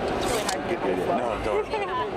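Overlapping background voices of a busy crowd talking, with no single voice clear.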